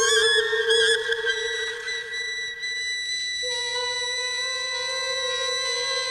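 Instrumental music of steady held tones. A warbling, wavering figure sounds in the first second, then the tones hold. About three and a half seconds in, the lowest tone steps up slightly and a new tone joins it.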